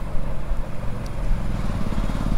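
Steady low mechanical hum, engine-like, with no speech over it.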